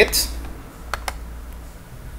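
Two quick computer mouse clicks about a second in, over a steady low electrical hum.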